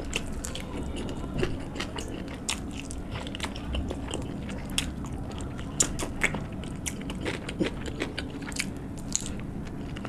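Close-miked eating: a person biting and chewing meat off a bone, with irregular sharp crunches, smacks and wet clicks of the mouth, then a mouthful of rice and curry eaten by hand.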